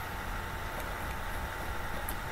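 Steady background hiss and low hum with a faint steady high tone: room tone between spoken sentences.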